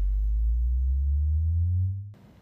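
Low synthesized tone from an animated logo sting, held at a steady level and gliding slowly upward in pitch, then cutting off just after the end.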